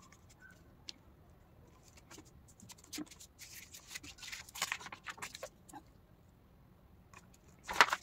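A folded paper card being handled and unfolded: rustling and crackling from about three to six seconds in, then a louder rustle near the end as the card is opened out flat.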